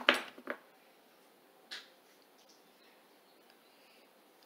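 Handling of a studded leather bridle with metal hardware: a brief rustle at the start, then a quiet room with a soft rustle about two seconds in and a few faint clicks.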